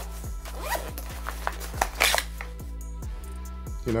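A fanny pack's zipper being pulled open in short rasps, the longest and loudest about halfway through, over background music with a steady bass.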